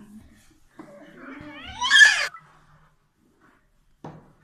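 A short, loud high-pitched vocal cry about two seconds in, rising in pitch and then falling away.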